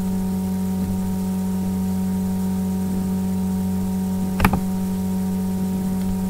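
Steady electrical hum with a buzz of several constant tones picked up by the recording, and a single mouse click about four and a half seconds in.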